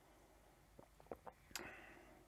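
Near silence while a man tastes beer: a few faint mouth clicks about a second in, then a short faint breath near the end.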